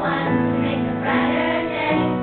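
Children's chorus singing together, holding sustained notes that change about every half second.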